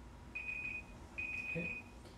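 Timer alarm beeping twice, two steady high-pitched beeps of about half a second each and of the same pitch. It marks the end of a one-minute breathing timer.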